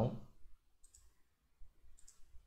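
Two faint computer-mouse clicks, one just under a second in and one near the end.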